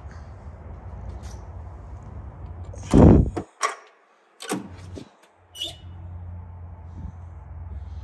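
The driver's door of a 1981 Chevrolet Camaro is unlatched and swung open, with a loud knock about three seconds in, then a few clicks and a brief squeak from the door's hinges, which are a little squeaky.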